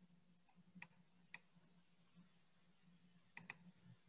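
Near silence with a faint steady low hum and a few faint computer clicks: one about a second in, another shortly after, and a quick pair near the end.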